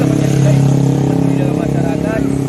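A small engine running steadily nearby: an even low hum that swells slightly about half a second in.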